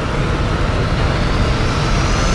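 Cinematic logo-intro sound effect: a loud, steady low rumble with a faint riser tone climbing in pitch over it.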